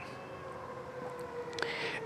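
Power liftgate motor of a 2024 Lincoln Navigator L whirring as the tailgate rises, a faint steady whine that stops near the end with a small click.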